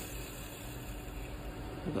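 Wood lathe running while a turning tool cuts the spinning softwood spindle, removing waste near the drive end: a steady, even hiss of cutting over a faint steady motor hum.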